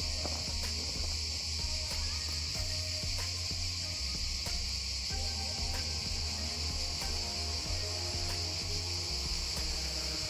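Crickets chirping in a steady, unbroken high-pitched trill.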